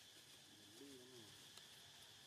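Near silence with a faint steady hiss, and one faint, low call about half a second in that rises and falls like a coo.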